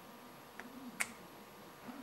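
A sharp click about a second in, with a fainter tick just before it: small metal parts knocking together as a bearing block assembly is slipped into an aluminium flashlight head.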